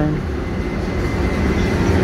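HXD3D electric locomotive pulling a passenger train into a station platform, a steady low rumble that grows a little louder as it draws alongside.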